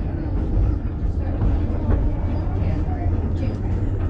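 Cable-hauled incline railway car running along its track, a steady low rumble heard from inside the car. Voices sound faintly underneath.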